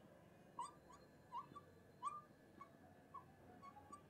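Very faint, short squeaks of a marker pen writing on a board, about six quick chirps spread unevenly over four seconds.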